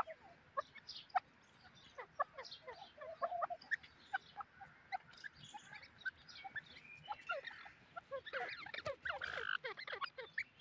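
Birds calling in many short, scattered chirps, with a few low soft trilling notes, the calls coming thicker and louder over the last couple of seconds.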